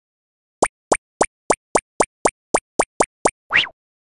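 Cartoon sound effect for an animated intro: eleven quick, evenly spaced plopping pops, then a short rising swoosh near the end.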